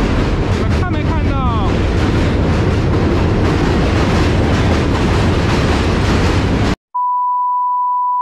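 New York City subway train running across the Manhattan Bridge's steel span right beside the walkway: a loud, steady rumble, with a brief metallic squeal about a second in. About seven seconds in it cuts off suddenly and a steady 1 kHz test tone begins.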